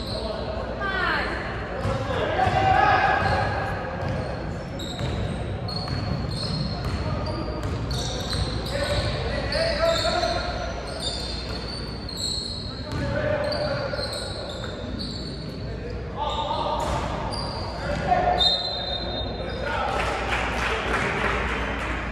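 Basketball game on a hardwood gym floor: the ball bouncing, sneakers squeaking in short high chirps, and players and spectators calling out, all echoing in a large hall. A louder rush of noise comes near the end.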